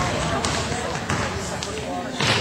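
A basketball bouncing a few times on a gym floor, under the chatter of spectators.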